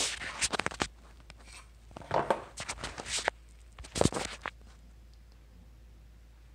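A 10-inch scimitar knife being drawn out of its foam-lined plastic blade sheath: scraping and clicking handling sounds in three short clusters during the first four and a half seconds.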